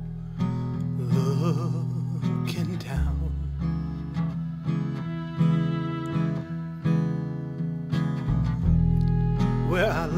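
Instrumental passage of a folk song on acoustic guitar, upright bass and violin: low bass notes change every second or so under plucked and strummed guitar, with a wavering violin line early on and again near the end.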